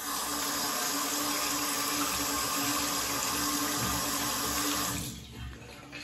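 A bathroom tap running into a sink, with the razor rinsed under it. The water runs steadily for about five seconds, then is shut off.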